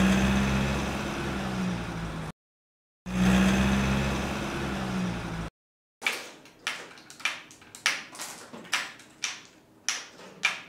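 Wooden toy dump truck rolling across the tabletop on its wooden wheels: a steady rumble heard twice, each about two seconds long and cut off abruptly. From about six seconds in, glass marbles being set one at a time into a wooden wave-shaped marble-run track, clicking against the wood and each other two or three times a second.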